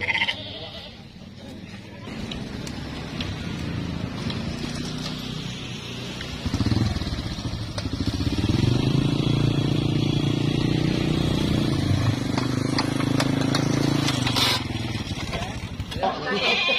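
Goats bleating amid livestock-market crowd noise, with a motor engine running steadily close by through the second half.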